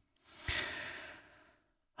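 A man's breath close to the microphone: one short, noisy breath about half a second in that fades away within about a second.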